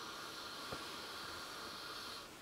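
One long, slow in-breath through the nose, a faint steady hiss lasting about two seconds, as a person smells freshly rinsed oolong tea leaves held close in a small cup.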